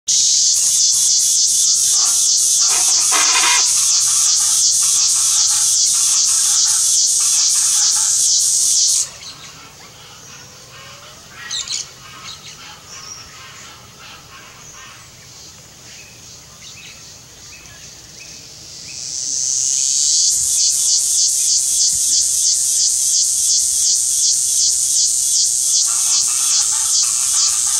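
Insect chorus: a loud, high buzz pulsing a few times a second, which cuts off about nine seconds in and builds back up from about nineteen seconds. Faint bird chirps are heard in the quieter gap.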